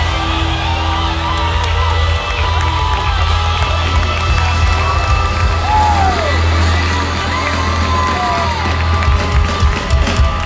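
Amplified live band music with a heavy bass, and a large crowd cheering and whooping over it.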